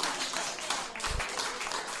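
Audience applauding: a dense, even patter of many hands clapping.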